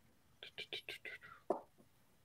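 Faint whispering, a quick run of breathy, muttered syllables under the breath, ending in a short click about a second and a half in.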